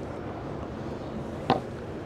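Steady background noise of a large, busy exhibition hall, with a single short click about one and a half seconds in.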